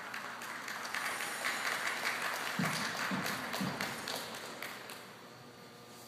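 Audience clapping just after the skating music stops, building within the first second and fading away near the end.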